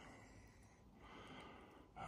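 Near silence: faint background hiss, with a slightly louder soft swell of noise about a second in.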